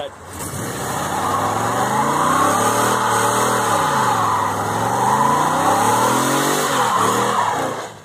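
1979 Corvette's LT1 V8 revving hard through a burnout, the rear tyres spinning and squealing in a dense hiss over the engine. The revs climb over the first couple of seconds, sag briefly about halfway, climb again, and drop off near the end.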